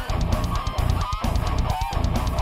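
Heavily distorted electric guitar playing a fast, choppy low metal riff, with short high squealing notes about a second in and again near the end.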